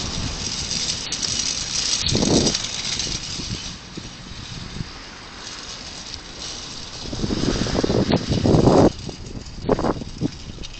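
City street traffic noise heard from the sidewalk, with louder swells about two seconds in and again for a couple of seconds near the end as vehicles pass.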